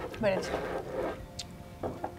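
Conversational speech: a woman talking about the food, trailing off, with a short light click about one and a half seconds in.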